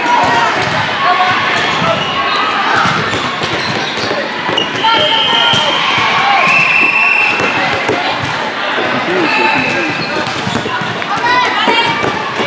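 Indoor volleyball play: knocks of the ball being struck and bouncing, short high squeaks, and players' and spectators' voices, all echoing in a large hall.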